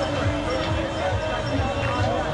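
Loud music with a steady thumping drum beat, about three beats a second, and voices singing or chanting over it.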